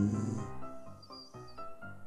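Background music, with a lion's low, breathy snore-like grunt near the start.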